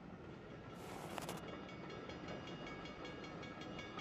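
Faint train sound slowly growing louder, with a short burst of hiss about a second in, then a steady high ringing of several tones from about a second and a half on.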